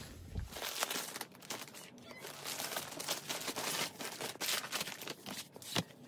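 Crinkling and rustling of a paper instruction sheet and packaging being handled and unfolded, with many small irregular crackles.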